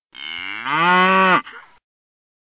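A cow mooing: one drawn-out call of about a second and a half that rises in pitch partway through and drops off at the end.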